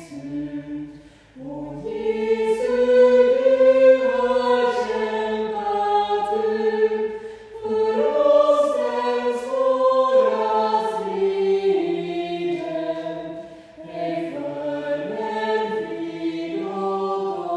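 Small choir singing a hymn in slow, sustained phrases, breaking briefly between phrases about a second, seven and a half seconds and thirteen and a half seconds in.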